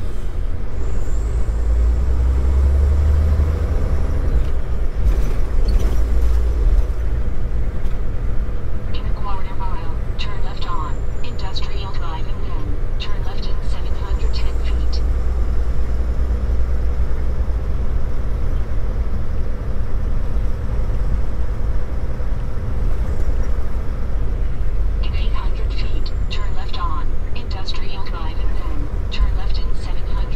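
Heavy, steady low rumble of a Volvo VNL860 semi truck's engine and drivetrain heard inside the cab as the truck drives slowly along a street.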